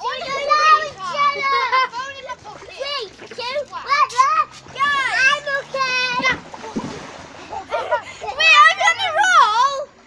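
Children shrieking and shouting in high, sliding voices while playing in a paddling pool, with water splashing about two-thirds of the way through.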